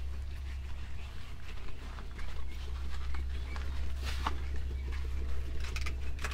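Outdoor background with a steady low rumble and a few faint, scattered animal calls, the clearest about four seconds in.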